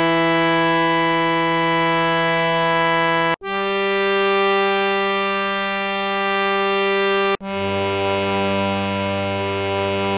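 Harmonium sounding the ascending scale of Raag Bhoopali in G, one sustained note at a time, each held about four seconds with a brief break between. It plays Dha (E), then the upper Sa (G), then, near the end, the lower Sa an octave down.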